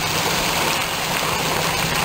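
Suction dredge at work in shallow water: steady engine noise, with water churning at the suction nozzle as it draws in water and stones.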